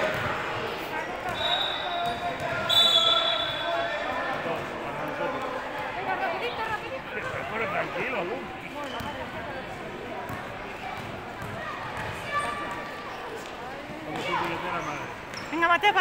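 Basketball bouncing on a hard sports-hall court amid the voices of children and spectators. About one and a half to three seconds in, two short shrill blasts of a referee's whistle.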